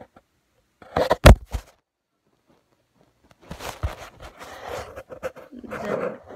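Handling noise from a phone recording itself: a sharp, loud knock about a second in, then, after a pause, rustling and bumps as the phone is moved and tilted.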